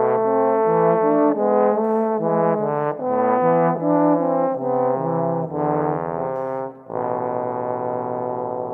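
Two bass trombones playing a duet: two moving lines of short, separately tongued notes. Just before seven seconds in, the playing breaks briefly and a long, low held chord sets in.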